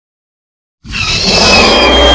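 Recreated SpaceGodzilla roar sound effect bursting in suddenly nearly a second in, loud, with a high screech over a deep, steady rumble.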